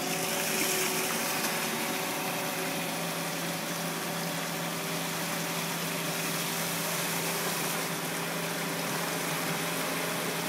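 Water pouring in a steady sheet off the lip of a tipped fish-lift hopper into the trough below, over the steady hum of the lift's machinery.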